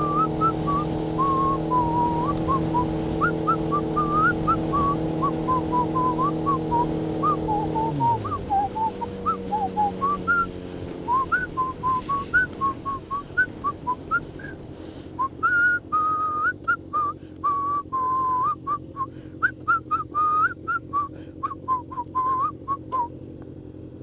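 A person whistling a tune over a motorcycle engine. The engine holds a steady note for the first eight seconds or so, then drops in pitch and runs quieter; the whistling carries on in shorter, choppier notes in the second half.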